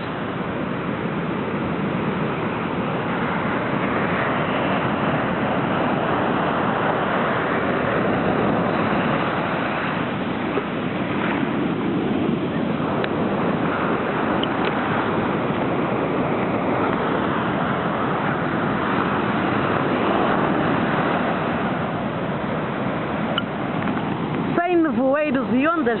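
Rough Atlantic surf breaking on a sandy, rocky beach: a steady rushing wash of waves that swells and ebbs.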